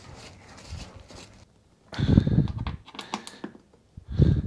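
A dull thump about halfway through, then a quick run of sharp clicks from a ratchet wrench tightening the bolts of a reinforced door striker on a car's door pillar.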